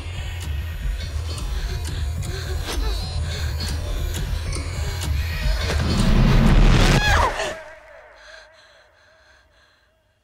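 Horror film score: a dense, low droning music bed builds to a loud swell with a sweeping glide about seven seconds in, then cuts off sharply, leaving a faint held tone.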